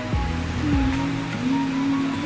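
Background music over the steady hiss of heavy rain.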